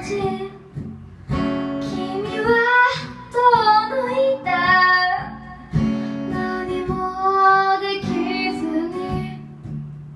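A woman singing a J-pop song live while accompanying herself on acoustic guitar, her voice gliding between held notes. The singing drops out briefly about a second in and again near the end while the guitar carries on.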